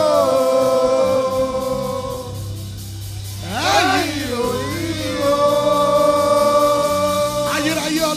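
Gospel worship singing: voices hold long sustained notes, gliding to a new note about halfway through, over a steady low bass accompaniment.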